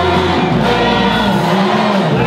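Music for a Tongan tau'olunga dance: many voices singing together over amplified accompaniment with held bass notes.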